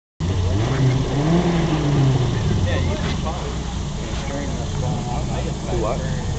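Jeep rock-crawler buggy's engine running under load as it crawls up a rock and tyre obstacle, with people talking nearby.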